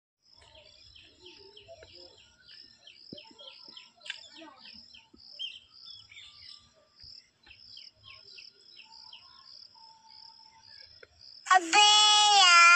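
A bird calling in a steady series of short, high chirps, about three a second, faint against the open-air background. Just before the end a much louder, long drawn-out pitched call begins.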